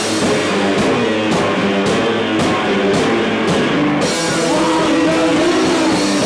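Live rock band playing loud: distorted electric guitar over a drum kit, with drum and cymbal hits on a steady beat that open into a continuous cymbal wash about four seconds in.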